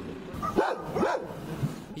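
A few short animal calls that rise and fall in pitch, the two loudest about half a second apart.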